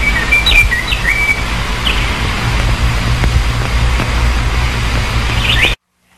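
Birds chirping in short, quick calls over a steady low outdoor rumble and hiss; the sound cuts off suddenly near the end.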